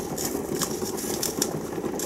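Large pot of water at a slow boil, a steady bubbling rumble, with scattered light clicks and scrapes from a utensil stirring thick, still-clumpy honey in a plastic bucket.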